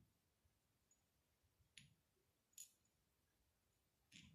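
Near silence with faint room tone, broken by two faint, brief clicks a little under a second apart around the middle.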